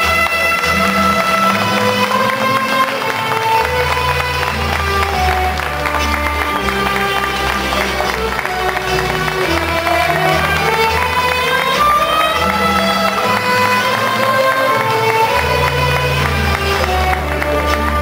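Romanian folk dance music: a melody line of held and wavering notes over a bass that shifts every couple of seconds, played for a children's folk dance.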